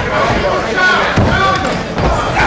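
Spectators shouting over each other in a large hall, with a heavy thud from the wrestling ring a little over a second in.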